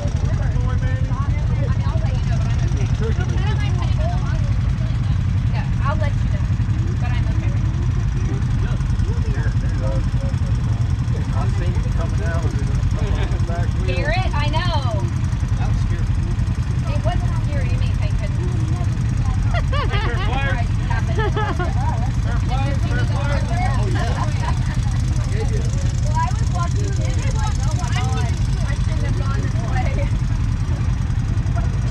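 An off-road vehicle's engine idling in a steady low rumble, with scattered voices talking faintly over it.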